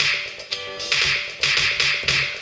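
A music track in the djay iPad app jumping back to the same cue point over and over, so the same fraction of a second restarts with a sudden attack a little more than twice a second. It sounds like a needle skipping on a scratched vinyl record.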